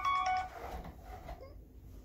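Mobile phone ringtone playing a melody of steady electronic tones, which stops about half a second in.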